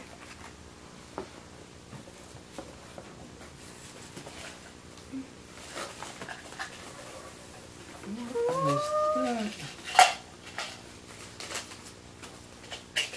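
Light clicks and rustles of toy packaging being handled. About two-thirds of the way in comes a short whine that rises and then falls in pitch, and a sharp click follows shortly after, the loudest sound.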